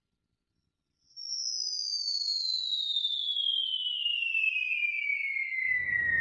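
Synthesized sound effect for an animated logo ident: a tone begins about a second in at a high pitch and glides slowly downward for several seconds, while a fainter tone rises above it from the same start. A low rumble comes in near the end.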